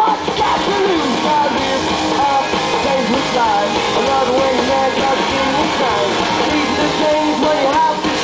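Live rock band playing loud and without a break: electric guitar, bass guitar and drums together, with pitched melodic lines sliding up and down over the driving accompaniment.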